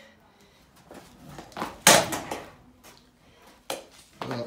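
Junior stunt scooter clattering hard onto concrete once about halfway through, with a short scrape of deck and wheels after it, then a smaller sharp clack near the end as the deck is whipped round.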